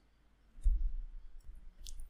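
A computer mouse clicking a few times, faint and short, with a low thump just after half a second in.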